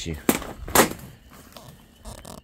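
Two sharp knocks about half a second apart, the second the louder, followed by faint rustling.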